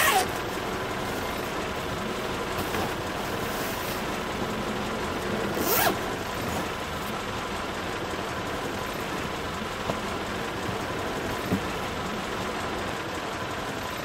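Zipper on a black fabric bag being pulled, with a brief loud pull at the start and another about six seconds in, over the steady hum inside a car.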